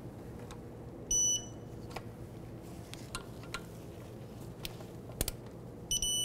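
Digital torque wrench beeping twice, a short high-pitched beep about a second in and another near the end, each signalling that a brake caliper mounting bolt has reached the set torque of 12 foot-pounds. Faint metal clicks of the tool on the bolts come between the beeps.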